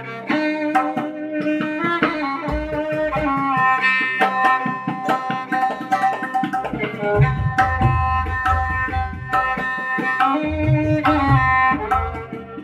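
Violin playing a melodic dhun in raga Mishra Bhairavi, accompanied by tabla playing a quick run of strokes. The deep, booming bass strokes of the bayan come in several stretches. The music comes in loud right at the outset.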